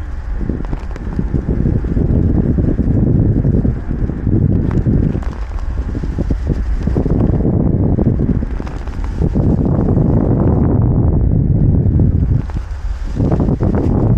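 Wind buffeting the camera microphone in flight: a loud, low rumble that surges and drops back several times.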